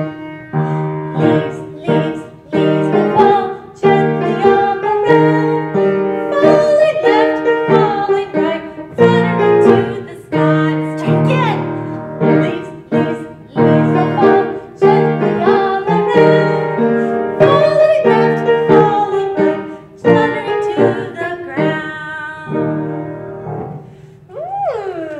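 Piano music with a steady rhythm of struck notes and chords, played as a children's song accompaniment.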